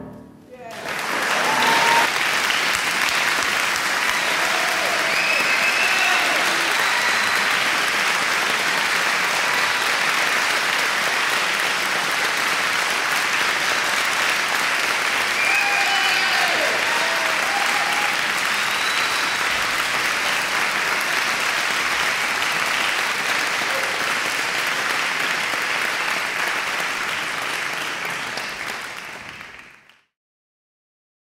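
Audience applauding steadily at the end of a live performance, swelling in about a second in, with a few shouts from the crowd mixed in; the applause fades out near the end.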